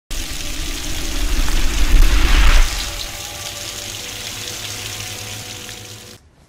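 Intro logo sound effect: a rush of water-like noise swells to a peak about two and a half seconds in. It then gives way to a few held low tones that fade out.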